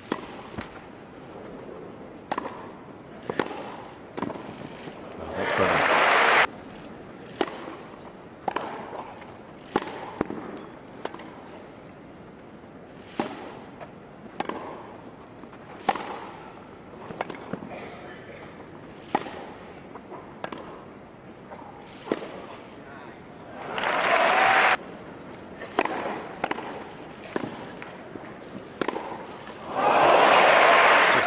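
Tennis balls struck by racquets in rallies, sharp single pops a second or two apart. Crowd applause and cheers swell twice, about five seconds in and again near 24 seconds, and once more at the end.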